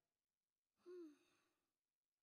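A girl's short, exasperated sigh, falling in pitch, about a second in; otherwise near silence.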